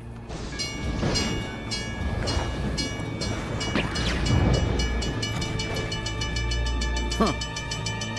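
Railroad crossing signal bell ringing in rapid, even strokes over a steady low rumble.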